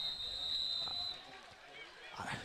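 A referee's whistle: one steady high blast that stops about a second in, blowing the play dead after the tackle, over faint stadium crowd noise.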